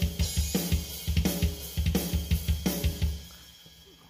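EZDrummer 2 virtual drum kit playing back a double-kick metal groove at 170 BPM, with kick, snare, hi-hat and cymbals in quick, even strokes. It stops about three seconds in and rings away.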